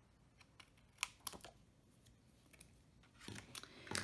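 Scissors trimming the overlong end off a strip of cardstock: a few faint, sharp snipping clicks about a second in, then a soft shuffle of the card being handled near the end.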